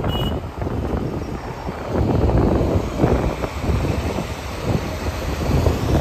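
Wind buffeting a phone microphone on a moving motorbike or scooter in traffic, a loud steady rush of wind with road and engine noise underneath.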